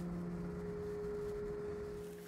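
Background piano music: a single held chord fading slowly, its notes ringing as steady tones.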